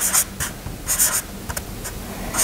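Marker pen writing on flip-chart paper: a quick run of short scratchy strokes, several a second, with brief pauses between letters.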